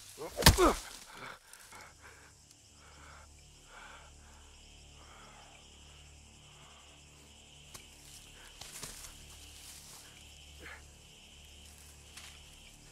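Film soundtrack playing quietly: a brief loud shout about half a second in, then faint voices over a steady low hum.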